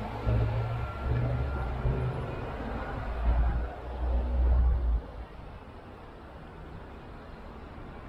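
Low street rumble from road traffic, loud and uneven for the first five seconds, then dropping suddenly to a quieter, steady street background.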